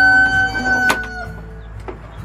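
Rooster crowing: the long held final note of the crow, ending just over a second in, with a sharp click near its end.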